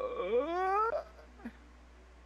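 A single voice-like wail that rises steadily in pitch for about a second, followed by a short faint blip.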